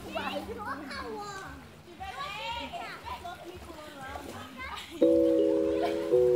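Voices of people playing in a river, calling and shouting to each other. About five seconds in, loud background music with long held electronic notes starts abruptly.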